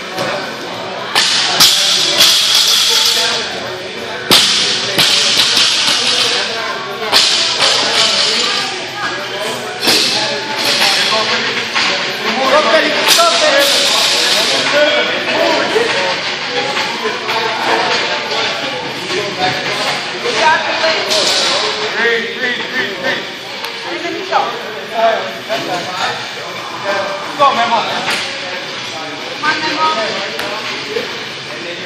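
Busy gym during a workout: indistinct voices and shouts, repeated bursts of hissing noise, and scattered knocks and clanks from barbells and the pull-up rig.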